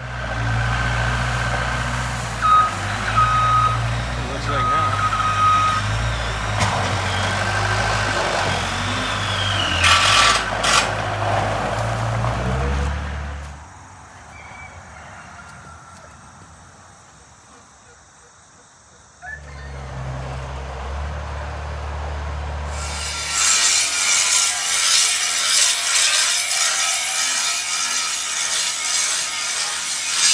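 Heavy truck engine running, with a reversing alarm beeping a few seconds in. After a quieter stretch the engine comes back briefly, and near the end a rough, steady scraping noise takes over.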